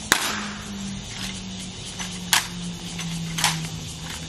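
Sharp slaps and clacks of honor guards' rifle drill, gloved hands striking bayoneted rifles as they are swung: a loud crack right at the start and two more about 2.3 and 3.4 seconds in, with a fainter one between. A low steady hum runs underneath.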